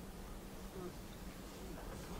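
Quiet room tone in a pause between sentences: a faint, steady low hum under soft background noise.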